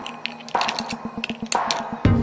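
Electronic background music in a breakdown: the bass drops out, leaving repeating chords and a run of quick percussive clicks.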